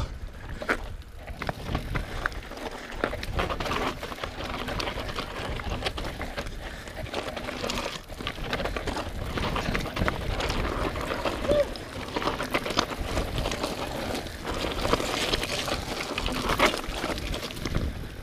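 Mountain bike descending fast down a steep dirt singletrack: a continuous rough rumble of knobby tyres over dirt and grass, with frequent rattles and knocks from the bike over bumps.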